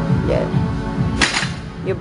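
Background electronic music with a steady beat; about a second in, a loaded barbell comes down onto the gym floor with one sharp crash.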